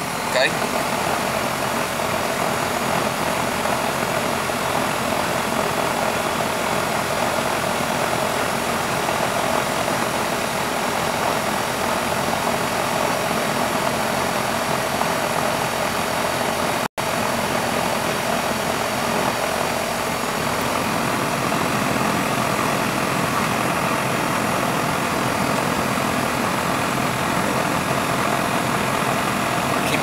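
York 3-ton microchannel outdoor AC unit running steadily, compressor and condenser fan, while it is being charged with R-410A refrigerant after running low from a leak. The sound breaks off for an instant just before the middle.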